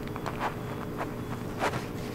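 Scattered small clicks and taps of handling at a lectern, the loudest near the end, over a steady low electrical hum from the room's sound system.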